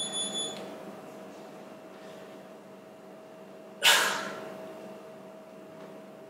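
A short high electronic beep at the start over a steady hum, then about four seconds in a single loud, sudden rush of noise that fades within half a second.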